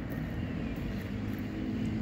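Steady low rumble of distant engine noise carried across open ground, with no single passing event standing out.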